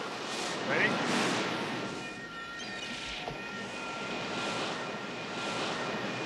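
Ocean surf washing onto a beach, coming in swells that rise and fade, with a man saying "Ready?" near the start.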